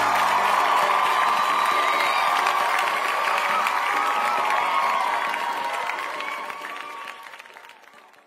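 A crowd cheering and clapping, a celebratory crowd sound effect that fades out over the last few seconds.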